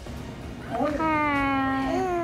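A two-month-old baby cooing: a long drawn-out vowel sound starting about half a second in, its pitch sliding slowly down.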